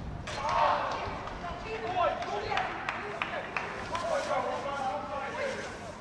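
Pitch-side sound of a football match: players shouting and calling to each other, with several sharp thuds of the ball being kicked.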